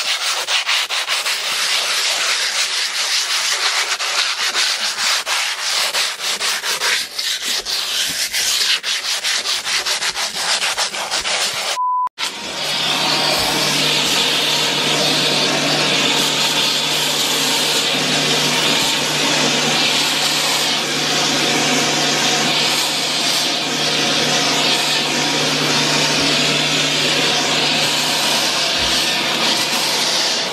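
A painted window sill is hand-sanded with a sheet of sandpaper in quick back-and-forth rubbing strokes. After a brief break about 12 seconds in, a vacuum cleaner runs steadily with a constant low hum as its nozzle is run along the sill to pick up the sanding dust.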